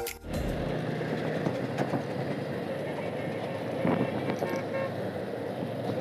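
Steady wind and road noise from a motorcycle riding through city traffic. A vehicle horn toots faintly about four seconds in.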